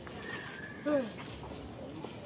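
A macaque's short call that falls in pitch, about a second in, preceded by a faint, thin high-pitched tone.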